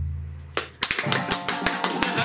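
A deep boom dies away. Then, a little under a second in, two people start clapping rapidly and keep it up through the rest, over light background music.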